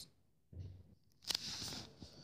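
Faint handling noise from toy action figures and the handheld camera: a soft rustle about half a second in, then one sharp click and a short rustle near the end.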